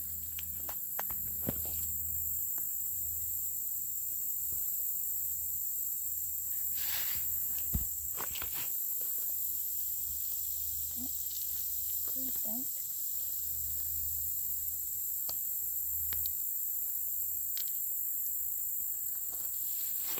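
Steady high-pitched hiss with a low rumble underneath, broken by a handful of sharp clicks and rattles of gravel stones being handled.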